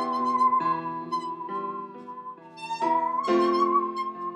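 A 26-inch Stanley handsaw bowed as a musical saw, holding a high, wavering note with vibrato that dips and slides up in pitch, over piano chords from a backing track that strike about once a second.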